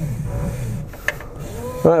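An UP Box 3D printer's print-head carriage being slid by hand along its freshly greased X/Y rails with the printer powered off, giving a low rubbing rumble with a single click about a second in.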